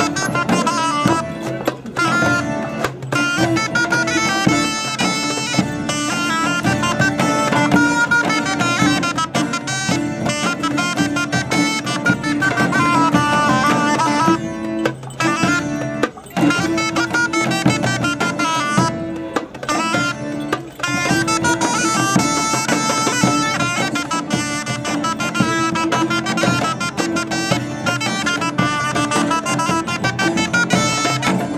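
A medieval-style folk ensemble playing a lively tune live. A buzzing shawm-like reed pipe carries the melody over bowed fiddle, plucked cittern and hand drums, with a steady low note held underneath.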